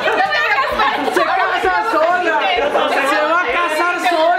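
A group of people talking over one another in excited chatter.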